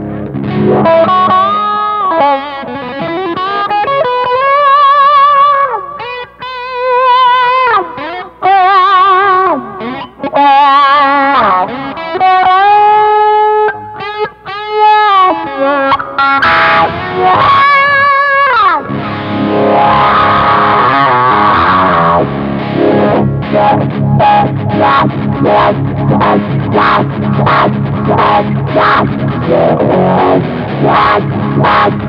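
Distorted electric guitar played through a Morley Power Fuzz Wah, its fuzz and wah engaged together, with the treadle rocked so the tone sweeps: held lead notes with heavy vibrato and bends, then from about two-thirds in a fast, chugging riff.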